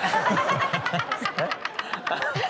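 A small group laughing hard, with a high rising squeal of laughter in the first second and scattered hand claps.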